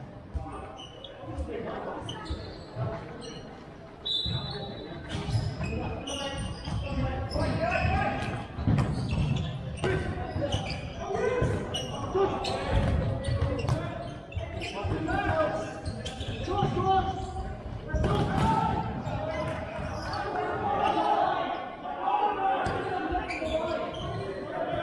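Indoor futsal game: players shouting to each other while the ball is kicked and bounces on the hardwood court, all echoing in a large sports hall.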